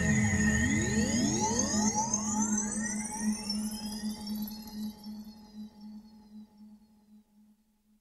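Music outro with no beat: many sweeping tones glide up and down in overlapping arcs over a steady low hum, fading out to silence about seven seconds in.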